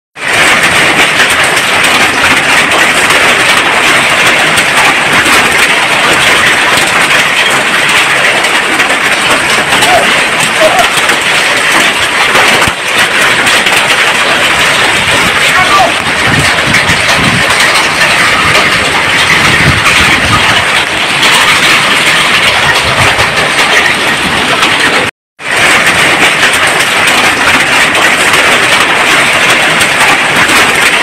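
Hail and heavy rain pelting down on a road and roofs, a loud steady hiss of falling ice and water, broken briefly once about 25 seconds in.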